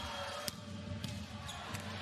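A volleyball being struck four times in a rally, sharp slaps about half a second apart, the first the loudest, over steady arena crowd noise.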